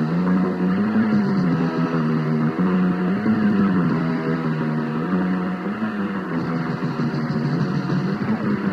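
Lo-fi cassette recording of a punk band: heavily distorted electric guitar playing a repeated riff, its pitch stepping up and back down about every two and a half seconds.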